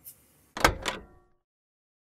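Two short knocks about half a second in, a quarter-second apart, each with a brief ringing tail; then the sound cuts off to silence.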